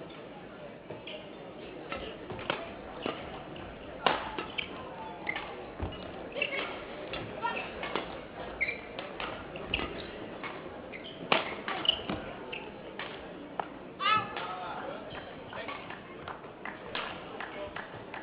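Badminton rally: sharp cracks of rackets striking the shuttlecock at irregular intervals, the loudest about four, eleven and fourteen seconds in, with lighter taps of feet on the court between them. A brief squeak sounds about fourteen seconds in.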